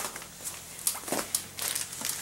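Scattered light rustles and clicks of handling, with the crinkle of a plastic-wrapped gun sock package being picked up near the end.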